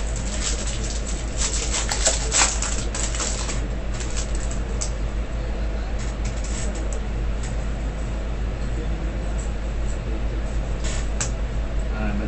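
A foil trading-card pack wrapper crinkles and tears open in a burst of crackling over the first few seconds. A few light rustles of cards being handled follow. A steady low electrical hum runs underneath throughout.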